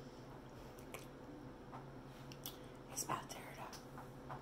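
Faint close-up eating sounds from a person taking a bite of fried pork chop: a few soft mouth clicks and smacks, the clearest about three seconds in, over a steady low hum.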